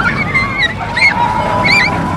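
A run of short squeaky, honk-like calls, several a second, each a quick hooked rise and fall in pitch, over a steady low background.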